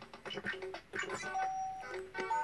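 Circuit-bent Playskool electronic toy, rewired with 40106 oscillators and a 4017 sequencer, playing thin beeping tune notes at changing pitches, with a second song playing faintly underneath. One note is held for about half a second past the middle.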